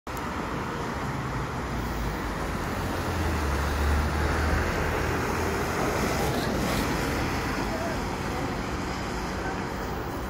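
Road traffic with heavy vehicles driving past: a city bus and a fire truck. A low engine rumble swells about three to five seconds in as they pass close by.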